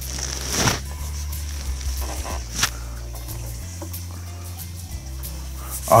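Quiet background music carried mostly by low sustained bass notes that change every second or two, with a couple of short knocks from handling a guitar, about half a second and two and a half seconds in.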